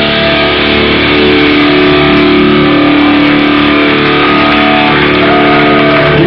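Hardcore band playing live and loud: distorted electric guitars and bass hold long ringing chords for several seconds, with no vocals. The recording is muddy and distorted.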